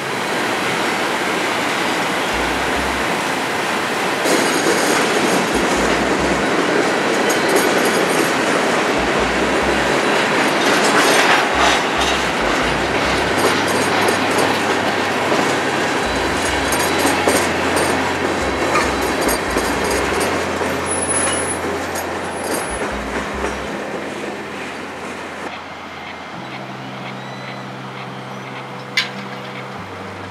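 Covered hopper cars of a grain train rolling past close by, wheels clicking over the rail joints, with a brief high wheel squeal about two-thirds of the way through. The rolling noise fades over the last few seconds, and a single sharp click comes near the end.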